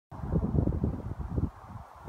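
Wind and handling noise on the microphone, a rough low rumble that starts suddenly and is strongest for about a second and a half, then drops.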